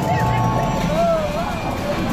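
Millennium Falcon: Smugglers Run simulator's jump-to-hyperspace effects: a deep steady rumble with a hum over it, joined by riders' wavering exclamations.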